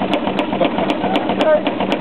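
Two-cylinder compound steam engine running, its cranks and valve gear making a regular mechanical clicking over a steady hum.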